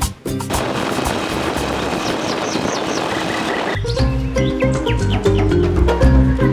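A steady outdoor hiss with a bird chirping about five times in quick succession, high and falling, partway through. Then background music with plucked and struck notes comes in a little past halfway.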